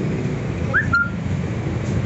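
Steady low rumble of street traffic, with a brief high chirp rising in pitch followed by a short high steady note just under a second in.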